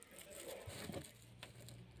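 Faint, soft rustling of fingertips rubbing dried berry pulp and seeds against cheesecloth to separate the seeds.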